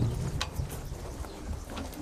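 Outdoor background of a standing crowd with a few light taps.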